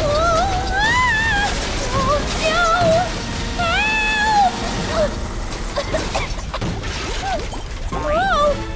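Cartoon soundtrack: a character's high voice laughing and humming in sliding, sing-song notes over background music for the first half. After that the music goes on more quietly, with a few scattered knocks.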